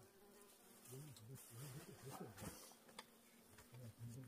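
A flying insect buzzing faintly close by, its pitch wavering up and down as it circles.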